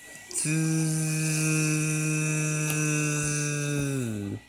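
A person's voice holding one steady, droning tone for about three and a half seconds, dropping in pitch as it trails off at the end: a mouth sound effect made while pushing a toy tank.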